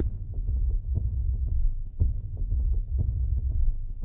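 Low, soft thumping bass of background music, with nothing in the higher range.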